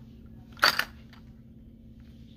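Clear plastic clamshell pack of a fishing lure being handled and turned over, giving one sharp plastic crackle a little over half a second in and a fainter tick shortly after.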